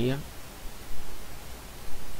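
A man's voice trails off at the start, then steady hiss and low hum from the recording, with a couple of brief low bumps.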